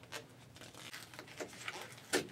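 Faint tearing and crinkling of a paper packaging sleeve being ripped open by hand, with a few small scattered ticks and rustles.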